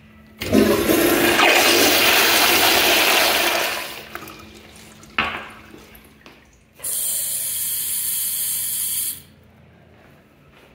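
Commercial toilets with exposed flush valves flushing: a loud rush of water for about three seconds that tails off, a sharp burst a second later, then a steady hiss for about two seconds that cuts off abruptly.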